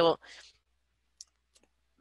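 A spoken word trails off just after the start, then a pause of near silence broken by one faint, short click about a second in and a fainter tick shortly after.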